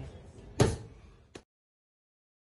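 A boxing glove smacks into a focus mitt once, about half a second in, with a faint click shortly after; then the sound cuts out.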